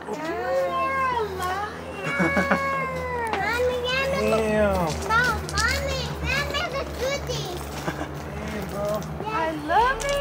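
Excited, high-pitched vocal squeals and exclamations from several people, overlapping, with no clear words, over a steady low hum.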